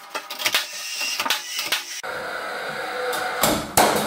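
Timber stud frame being fixed with a handheld power nailer. A run of sharp knocks and clicks, then a steady whir, and two loud sharp shots about three and a half seconds in.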